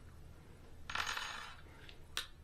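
Bolt of an AR-9 pistol being worked by hand: one short metallic sliding rattle about a second in, with a faint click near the end. The bolt now travels freely after a channel was widened with a Dremel, which the owner takes as the fix for his double feeds.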